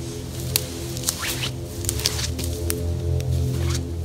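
Background music with steady, held low notes.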